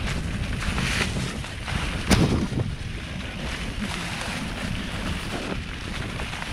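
Wind buffeting the microphone and tyres rumbling over a dirt singletrack as a mountain bike moves along the trail, with one sharp knock about two seconds in.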